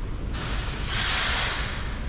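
A hiss of air, starting sharply about a third of a second in and lasting about a second and a half, over a steady low rumble.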